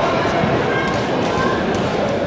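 Crowd chatter: many overlapping voices around a ring, with a few light knocks.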